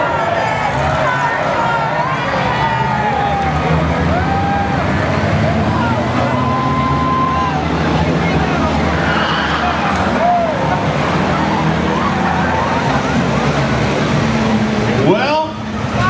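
Engines of a pack of small front-wheel-drive race cars running together as they pull away, their locked rear ends dragging on skid plates. A crowd cheers and shouts over them throughout.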